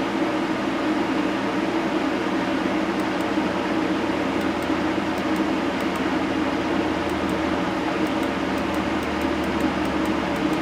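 Steady mechanical whir and hum of a running fan unit.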